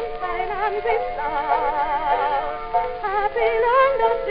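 Early acoustic-era phonograph recording of a soprano with small orchestra accompaniment, holding and changing sustained high notes with a wide vibrato. The sound is thin, with no bass.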